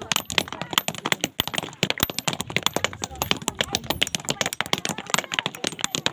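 Many hammers striking stone at once: a dense, irregular clatter of sharp clinks from several people breaking rock into gravel by hand, with voices among them.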